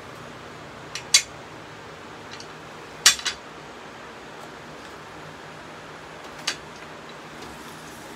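A few sharp metal clicks and clanks from the Hercules miter saw stand's extension support arm being handled and adjusted: two about a second in, the loudest pair near three seconds in, and one more later.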